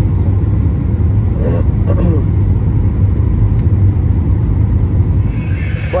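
Steady low rumble of an airliner cabin in flight, with a faint voice briefly heard about a second and a half in.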